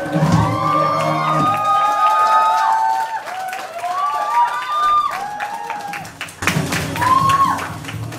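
A live rock band's final chord on electric guitars cuts off about a second and a half in, followed by the audience cheering, whooping and clapping.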